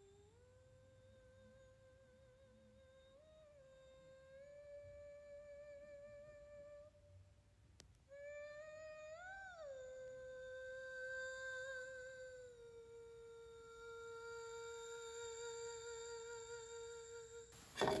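A voice humming a slow melody of long held notes with vibrato, gradually getting louder, with a brief pause about halfway through and a short loud sound right at the end.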